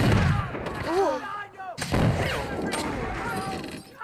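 Flintlock musket gunfire from a film soundtrack. There are two loud, heavy reports, one at the start and one a little under two seconds in, with a fainter shot later and voices between them.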